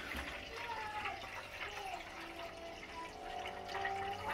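Water from a Maytag front-load washer's drain hose pouring in a steady stream into a shallow pan, splashing as the pan fills. The washer is being emptied by hand because it will not drain on its own (error code F9 E1).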